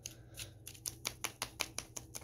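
Metal spoon clicking and scraping against a plastic water-bottle funnel as it packs a baking soda and conditioner dough down into a balloon: a quick, irregular run of light clicks.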